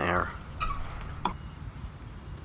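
Low, steady wind rumble on the microphone, with one sharp click about a second and a quarter in.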